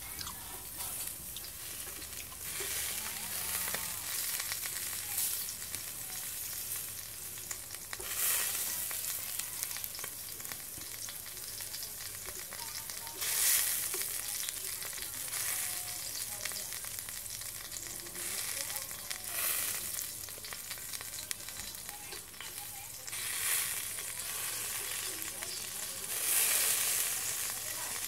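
Pork sizzling on a wire grill over glowing charcoal: a steady hiss that swells into louder bursts of sizzling every few seconds.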